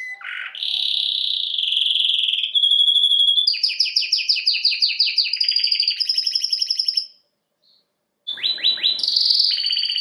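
A caged domestic canary singing a long song of held whistled notes and fast trills of rapidly repeated notes. It falls silent for about a second, seven seconds in, then starts again.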